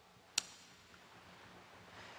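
Near silence, broken by one brief sharp click a little under half a second in.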